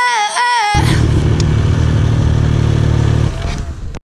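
A sung pop-music line ends abruptly under a second in. It gives way to a snowmobile engine running steadily at low revs close by, which eases off slightly near the end.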